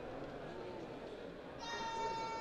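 Football pitch sound during a training match: distant players' voices, then near the end a single high-pitched call held steady for about a second, the loudest sound here.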